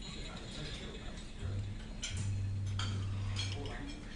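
Soundtrack of a short promotional video played through room speakers: mechanical clicking and ratcheting sound effects over a low hum that comes and goes, with sharper clicks in the second half.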